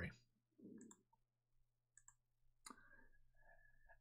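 Near silence with a few faint, short clicks.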